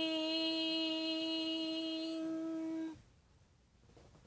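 A woman humming one long, steady note, which stops abruptly about three seconds in.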